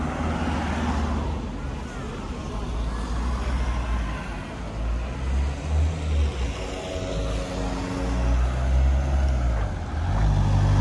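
City street traffic: cars driving past on the road, their engine and tyre noise swelling and fading as each one passes.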